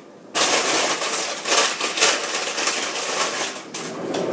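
Rummaging through frozen bags and packages: plastic crinkling and rattling with many small clicks and knocks, starting abruptly a moment in.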